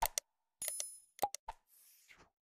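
Sound effects of an animated subscribe button: two quick clicks, a short bell-like ding, three more clicks, then a brief soft whoosh near the end.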